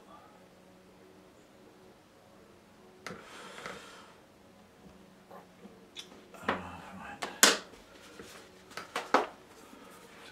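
A quiet start, a brief rustle about three seconds in, then a handful of sharp knocks and clatters of small objects being set down and picked up, the loudest a little past the middle.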